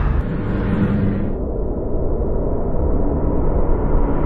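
Low, steady rumble of a cinematic logo-reveal sound effect; its higher hiss fades out about a second in, leaving the rumble.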